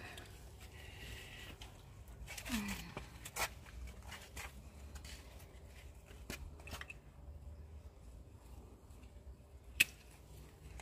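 Pruning secateurs snipping through tomato stems: a few faint scattered clicks, with a sharper snip near the end.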